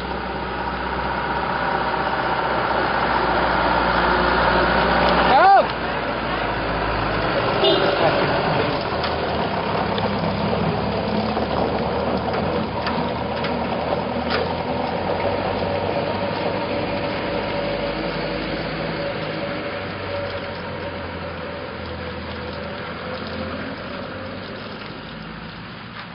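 Outdoor ambience: a steady engine hum with voices mixed in, and one sharp sudden sound about five and a half seconds in. It slowly fades out near the end.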